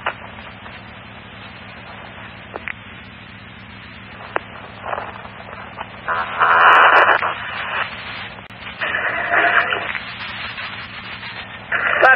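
Emergency-radio scanner audio between transmissions: a low hiss of static over a steady hum, broken by two sharp clicks. About six seconds in comes a loud burst of static lasting over a second, and a shorter one about nine seconds in, like a channel keyed up without clear speech.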